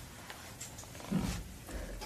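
Quiet room tone in a classroom, with one short, low sound from a person's voice a little over a second in.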